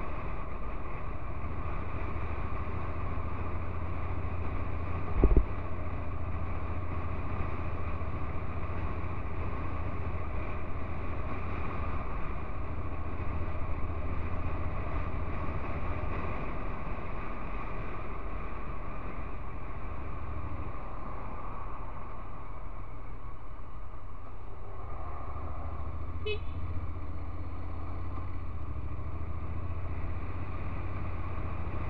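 Steady riding noise from a Honda NC750X DCT motorcycle at city speed: low wind rumble with the 745 cc parallel-twin engine running underneath. A single thump about five seconds in, and a brief high tone near the end.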